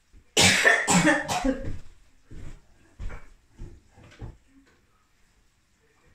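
A woman coughing: a run of several loud coughs close together in the first two seconds, then a few quieter, spaced-out coughs that die away by about four seconds in.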